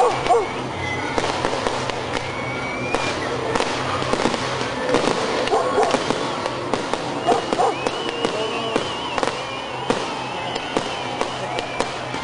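Fireworks bursting overhead in a string of bangs and crackles, over a steady low rumble of music. Voices shout among the bangs, and a high wavering whistle sounds through the second half.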